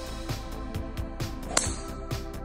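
Background music with a steady beat. About one and a half seconds in, a single sharp crack of a driver striking a teed golf ball.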